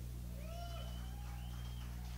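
Steady low electrical hum from the band's amplifiers and PA between songs, with two faint, short rising-and-falling cries over it.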